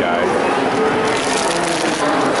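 Indistinct voices of visitors talking in a busy exhibit hall, with a steady hubbub and no single distinct sound.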